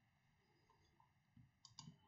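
Near silence, with a few faint, quick clicks near the end from someone working a computer.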